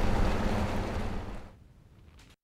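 Outdoor ambience by open water, a steady rushing of water and wind. It fades out about a second and a half in, to near silence.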